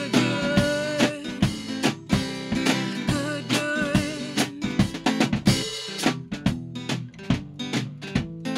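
Live folk song on strummed acoustic guitar with snare drum and cymbal played with sticks. A woman's voice holds long, wavering notes in the first half, then the guitar and drums carry on without the voice, the drum strokes standing out more.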